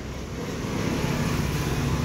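Motor vehicle noise, a low rumble that grows steadily louder over the two seconds as a vehicle approaches.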